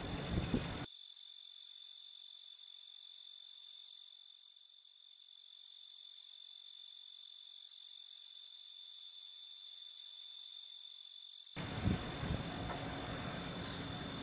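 A steady high-pitched whine runs throughout. Broader running-machinery noise from the grain vac is heard in the first second and again from about 11.5 s, and cuts off abruptly in between, leaving only the whine.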